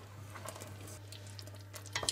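Faint stirring of thick strawberry jam with a wooden spatula in a stainless steel pot: soft, scattered scrapes and ticks over a steady low hum.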